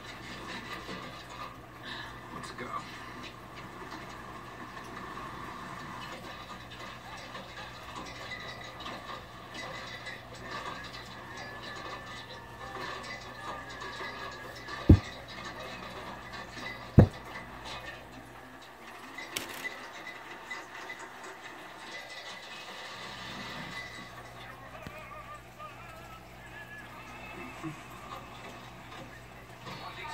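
Television sound from a film, music with indistinct voices. Two sharp low thumps about two seconds apart, a little past the middle, are the loudest sounds.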